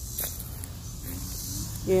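Low rumbling handling noise on a phone microphone as it is carried through a garden, with a few small clicks and a faint, steady high hiss of insects. A woman's voice starts near the end.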